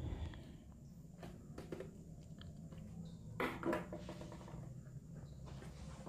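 Faint scattered clicks and scrapes of a screwdriver tightening a wire into a contactor's screw terminal and of wires being handled, over a low steady hum, with one brief louder noise about three and a half seconds in.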